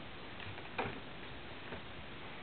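Faint short clicks and rustles from a Shih-tzu puppy worrying a plush slipper on carpet. There are three of them, the loudest a little under a second in.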